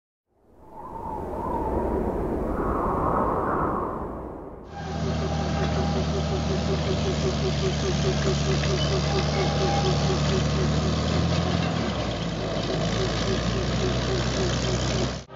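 A small passenger train running past on narrow-gauge track. Its engine makes a steady low hum, with a fast, regular clicking over it. This comes in sharply about five seconds in, after a few seconds of a different, noisier sound.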